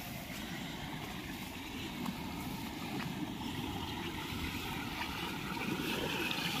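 Steady rush of water running through a narrow channel out of a paddy field, growing slightly louder toward the end.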